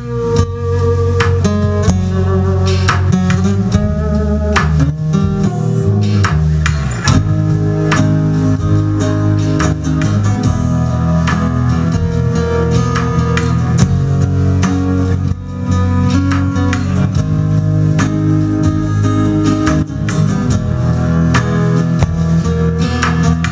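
Acoustic guitar played live in an instrumental passage, chords strummed steadily throughout, without singing.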